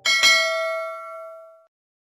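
A bright bell-like ding struck right at the start, its ringing tones fading over about a second and a half before cutting off suddenly: the closing chime of a news outro jingle.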